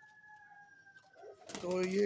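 A faint, thin, whistle-like bird call, held for about a second and a half and falling slightly in pitch. A man's voice comes in near the end.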